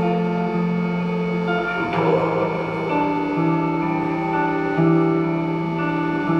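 Live band music: sustained chords held and changing about every second, with a brief noisy swell about two seconds in.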